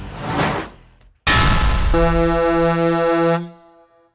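Title-sting sound effects: a rising whoosh, then a sudden loud hit that runs into a blaring, horn-like low tone. The tone pulses three or four times and cuts off sharply near the end.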